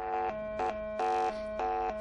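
Greenlee 500XP tone probe's speaker in default mode, picking up everything on the wire pairs at once: a steady power-influence hum, electronic tracing tones that switch pitch every third of a second or so, and a louder hissing stretch of noisy data-line interference about a second in. The mix shows the probe's default mode passes all tones and noise without filtering.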